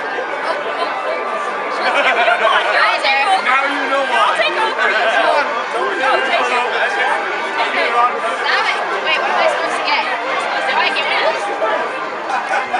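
Crowd chatter: many people talking at once, with overlapping voices that grow louder and busier about two seconds in.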